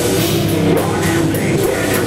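Live heavy metal band playing loud, distorted guitars over a drum kit with a fast, steady cymbal beat.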